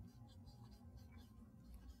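Faint strokes of a marker writing a word on a whiteboard: short, light scratches spread through the pause, over a low room hum.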